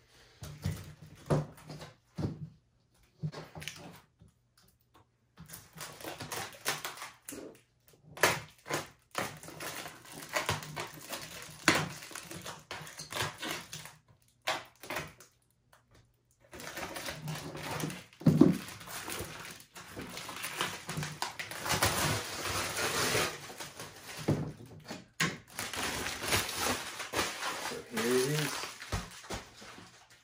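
Plastic protective wrap being peeled and crumpled off a 1/14-scale metal-and-wood lowboy trailer, crinkling in uneven spells, with knocks and clicks from handling the trailer on a table.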